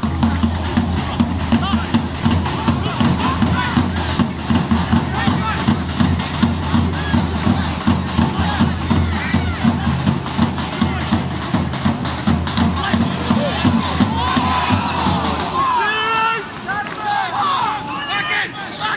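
Background music with a heavy bass and a steady beat, laid over faint field sound of voices and crowd; the music stops a couple of seconds before the end, leaving players' shouts and spectators.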